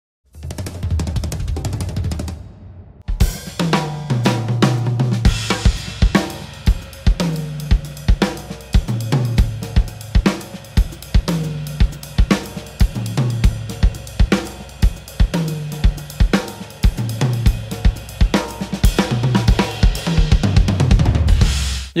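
Drum kit playing a Latin jazz groove: a cascara pattern on the right hand over a bass-drum part that follows a Latin bass line, with cymbals and a low drum tone recurring about once a second. It starts about three seconds in, after a short, different sound and a brief pause.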